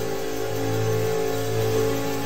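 Instrumental church music under a sermon: a keyboard instrument holding long, steady chords over a low bass note, shifting to a new chord partway through.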